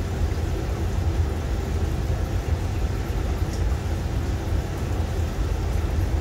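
Aquarium filter running: a steady low hum with a faint haze of water noise.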